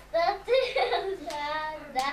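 A young girl's high-pitched voice in short, bending phrases, sung or laughed.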